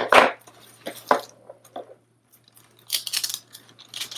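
Crafting handling noises on a desk: a sharp scrape at the start and a few light knocks as a plastic ruler is moved aside, then wax paper crinkling about three seconds in as the trimmed sticker is handled.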